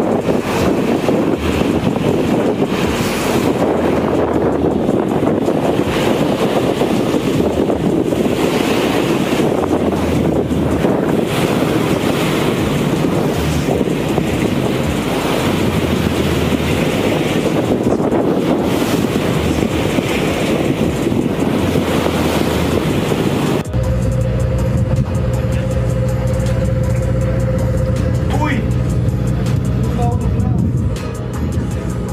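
Wind buffeting the microphone over the running engine of a boat at sea, a loud, steady rushing. About 24 seconds in it cuts abruptly to a steadier, humming sound.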